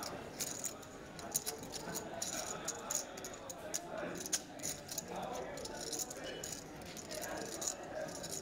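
Poker chips clicking against each other as players handle and riffle their stacks at the table, a quick, irregular patter of small clicks, with faint voices underneath.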